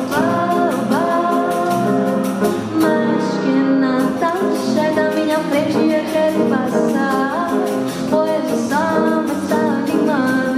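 Live song: a singer holding long notes with sliding, ornamented pitch into a microphone, over acoustic guitar accompaniment with a steady pulse.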